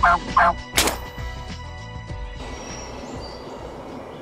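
Wild turkey gobbler gobbling in a short rattling burst, followed by a sharp crack just under a second in.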